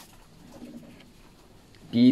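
A short pause in a man's speech, with speech ending at the start and starting again near the end. In the quiet gap there is only a faint low-pitched sound about half a second in.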